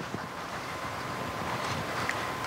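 Steady hiss of room tone on a stage microphone with a faint high-pitched hum, and a soft footstep or two as an actor walks across the carpeted stage.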